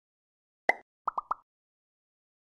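Short pitched pop sound effects of an intro logo animation: one pop, then about half a second later three quick pops in a row.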